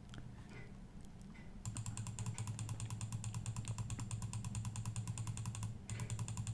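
Rapid, evenly spaced clicking over a low hum, from a computer being operated while the on-screen chart scrolls. It starts about a second and a half in and stops near the end.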